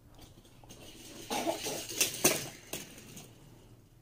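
Die-cast Hot Wheels cars rolling down an orange plastic track, a rattling clatter that builds about a second in, with several sharp clicks around the middle before fading.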